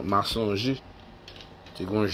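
A man's voice speaking in short bursts, pausing for about a second, then starting again near the end.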